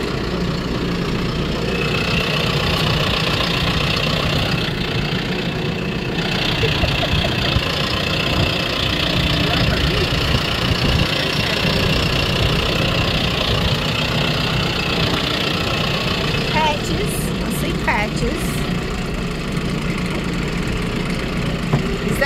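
Vehicle engine running steadily at low speed, heard from inside the cab, with a few light clicks or rattles about three-quarters of the way through.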